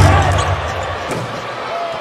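Live NBA game broadcast sound: court and arena noise, loudest in the first second.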